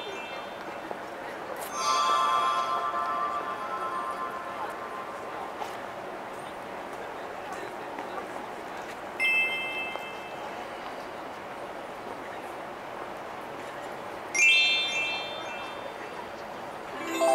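Bright electronic chime tones played over a loudspeaker: a chime with lower ringing notes about two seconds in, then shorter single chimes about nine and fourteen seconds in, each fading away over a steady background murmur.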